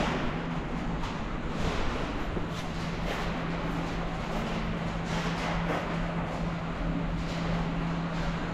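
A steady low mechanical hum over an even background noise, unchanging in level.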